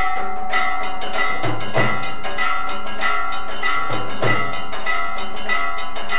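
Temple bells and gongs struck in a steady rhythm, about two strokes a second, with their ringing tones carrying over between strokes. Pairs of deep drum beats fall about every two and a half seconds. This is the accompaniment of an aarti lamp offering.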